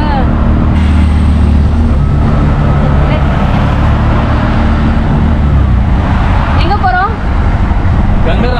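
Auto-rickshaw's small engine running steadily under way, heard from inside the open cab, with road and traffic noise around it; its low drone shifts pitch a couple of times as the speed changes.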